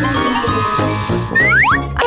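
Upbeat children's background music with a steady beat, overlaid with cartoon sound effects: a long falling glide, then quick rising zips near the end.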